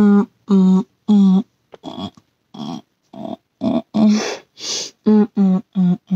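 A person's voice making a string of short, steady-pitched sung notes, roughly two a second. Breathy, hissing mouth sounds come in about two-thirds of the way through, like vocal percussion.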